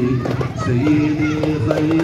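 A group of voices, children's among them, chanting an Arabic devotional song in praise of the Prophet in unison, holding long notes, with a few drum strokes.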